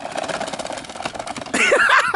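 Wooden chair legs scraping along asphalt as a hoverboard drags the chair forward, a dense rasping noise. About a second and a half in it gives way to laughter.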